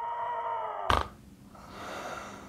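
A sleeping man snoring: a drawn-out pitched tone, broken about a second in by a sudden loud snort, then a noisy rasping breath.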